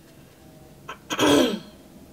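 A woman clears her throat once, a short harsh burst about a second in, with a faint tick just before it.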